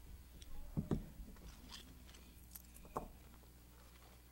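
Handling noise on a lecture table: a soft thump about a second in and another near three seconds, with small scattered clicks, as equipment is moved about, over a faint steady hum.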